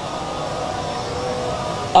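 A lull between lines of chanted recitation: low background noise of the gathering with a few faint steady tones. The reciter's loud voice comes in through the microphone at the very end.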